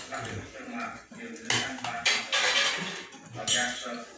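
A metal spoon scraping and clinking in a brass bowl and on metal plates during a meal, with several loud scrapes from about a second and a half in.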